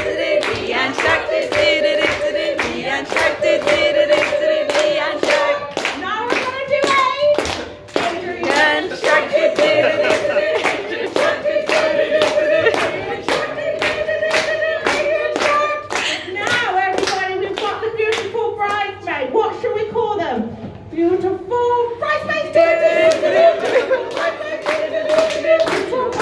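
Steady rhythmic clapping in time, about two to three claps a second, with a woman singing into a microphone over it. The clapping thins out briefly a few seconds before the end.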